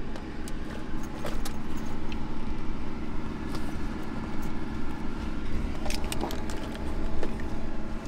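Clicks, knocks and rustles of someone climbing into and settling in a small aircraft's cockpit seat, over a steady low hum.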